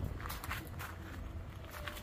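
Footsteps in sandals crunching on loose gravel, several irregular steps.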